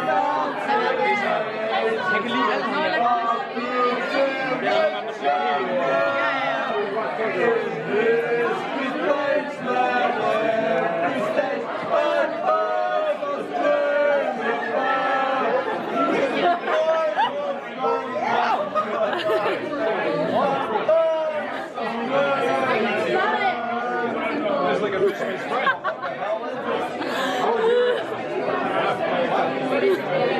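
A group of people chattering, many voices talking over each other at once.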